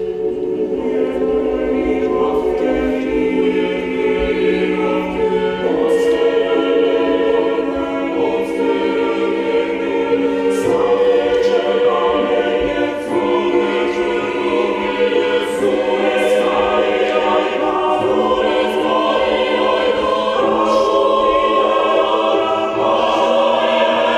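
Mixed choir of men's and women's voices singing in sustained, slowly changing chords, with piano accompaniment.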